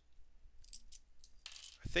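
A few faint, light clicks of plastic LEGO bricks being handled and pushed around on a tabletop; a man starts speaking near the end.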